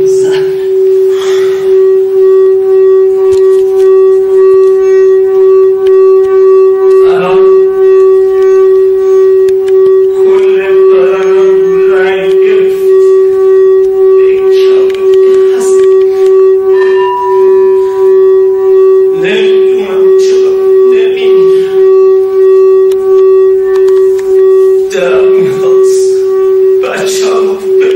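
A sustained musical drone held on one steady pitch with a slight regular pulse, like a reed or wind instrument, under a man's intermittent spoken voice.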